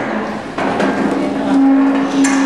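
A woman's voice over the press microphones, ending in one long held, level hum-like sound, like a drawn-out "mmm", that begins about half a second in.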